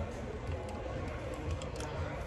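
Café room sound: faint background music and people talking, over a low steady rumble, with a few light clicks in the second half.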